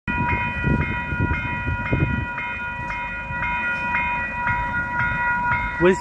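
Railway level-crossing warning bell ringing with even strokes about twice a second, sounding because a train is approaching. A low rumble runs under it for the first two seconds or so.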